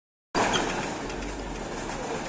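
Steady mechanical running noise from a yellow rail-mounted gantry crane that handles concrete sleepers, travelling on its rails, with a low hum underneath.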